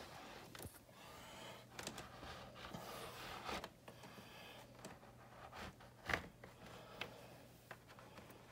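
Faint scraping and rustling with a few light clicks as the refrigerator's water line is pulled up through the door by a string. The sharpest click comes about six seconds in, over a faint low hum.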